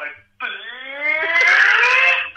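A man's demented laugh played back from a phone recording: one long, drawn-out, wailing sound that starts about half a second in and climbs steadily in pitch and loudness.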